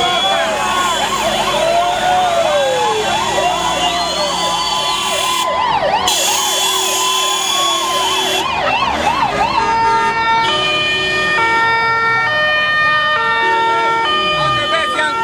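Several vehicle sirens sounding at once, their pitches swooping up and down and overlapping. In the latter part a run of steady notes stepping from pitch to pitch, like a tune, takes over.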